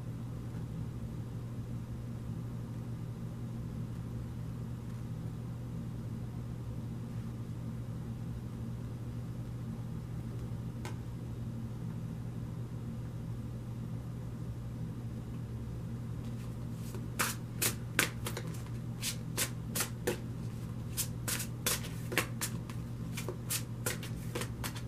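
Tarot cards shuffled by hand, a quick run of sharp card clicks starting about seventeen seconds in. Before that there is only a low steady hum and a single light tap about eleven seconds in.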